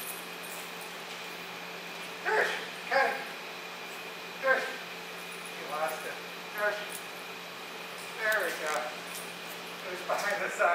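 A dog giving short barks and yips, about seven separate calls spread over ten seconds.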